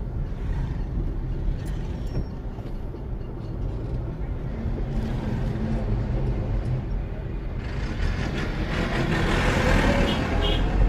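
Steady low engine and road rumble of a car driving slowly. Near the end a louder noise builds as a tractor with a trailer passes close alongside.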